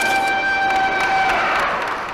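A signal horn sounds one steady, high tone, marking a plant's start-up at the press of a start button. The tone stops about one and a half seconds in, over a haze of crowd noise.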